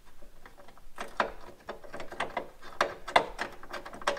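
Irregular small metallic clicks and taps as a nut is started by hand onto a bolt of a loosely fitted bonnet-strut mounting bracket, the loose bracket parts rattling. Two louder clicks come about a second in and again about three seconds in.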